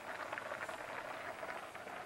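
Pot of macaroni in water at a rolling boil, a steady crackly bubbling.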